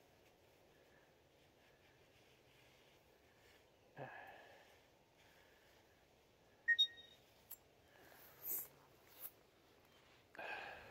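Faint handling sounds of a machete being pulled out of a rear rack bag. There is a soft noise about four seconds in, then two sharp metallic clicks with a brief ring just before seven seconds, followed by a smaller click and a couple of short rustles.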